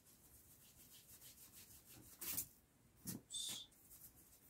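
A sponge rubbed and brushed over a latex-coated foam surface, spreading silver acrylic paint: faint scratchy rubbing, with a louder scuff about two seconds in and another about three seconds in. The second scuff is followed by a brief high squeak.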